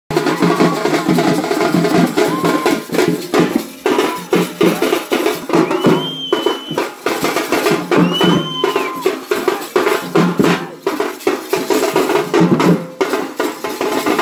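Large double-headed procession drums beaten with sticks, playing a fast, loud, driving rhythm. Two long high-pitched tones rise, hold and fall over the drumming near the middle.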